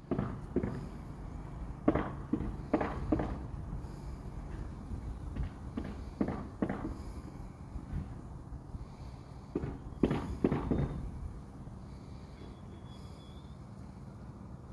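Irregular sharp knocks and thumps in small clusters over a low rumble, thinning out over the last few seconds.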